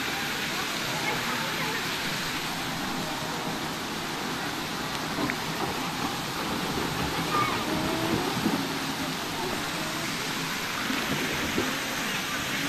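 Steady rush and splash of churning pool water, with faint voices of other swimmers now and then.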